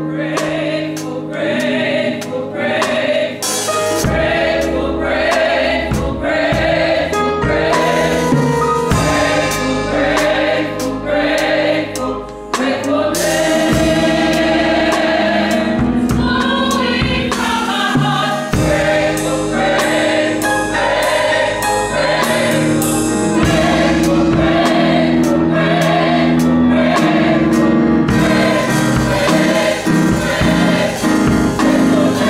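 Gospel choir singing in full voice with band accompaniment, drum kit hits marking the beat. About halfway through the choir holds one long chord.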